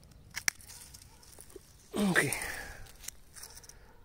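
Hand pruning shears snipping through a thornless blackberry cane: two sharp clicks close together about half a second in.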